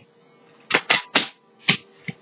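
Tarot cards clicking as they are handled and laid down on the table: four quick sharp clicks, then one more a little later.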